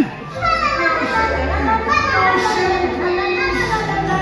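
Stage show music playing through a theatre's sound system, with voices over it.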